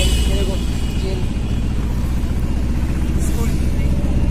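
Steady low engine and road rumble inside a moving open-sided passenger vehicle.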